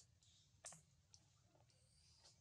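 Several faint, sharp clicks over a quiet background, the loudest about a third of the way in.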